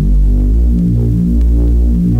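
Instrumental hip-hop beat with no vocals: deep, sustained electronic bass notes moving in a slow melodic line.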